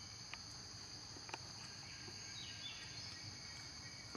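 Steady high-pitched insect chorus, a continuous buzz of crickets or cicadas, with a couple of faint clicks and a brief faint chirp past the middle.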